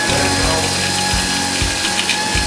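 Automatic toilet seat-cover unit's electric motor whirring steadily as it turns a fresh plastic sleeve around the seat.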